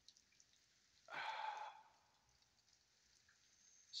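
Near silence, broken about a second in by one short breathy exhale, like a sigh, from a person close to the microphone.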